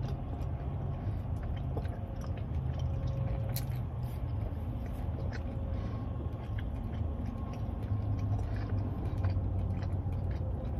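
Close-miked biting and chewing of a fried, potato-cube-coated corn dog, with small wet clicks of the mouth. Under it runs a steady low hum of the car.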